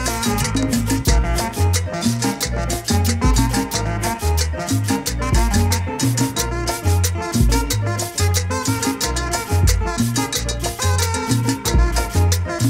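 Instrumental passage of a cumbia song, with a steady bass line under dense, fast, evenly spaced percussion and melodic instruments, no singing.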